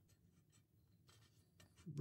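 Near silence, with faint scratching as a small adjusting screw on a jointed metal model is turned by hand.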